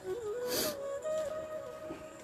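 Background music: a slow flute melody of held notes stepping up and down, with a brief burst of noise about half a second in.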